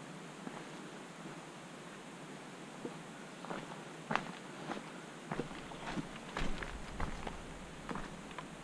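Footsteps on a dirt forest trail, heard from a forehead-mounted camera: faint at first, then a run of irregular crunching steps from about halfway in.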